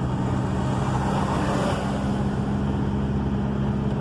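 Car engine running steadily with tyre and road noise, heard from inside the cabin. A broader rush swells about a second in, as an oncoming vehicle passes.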